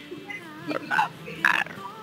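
Quiet, broken voices over a video-call link, with a short "ah" about one and a half seconds in, over faint background music.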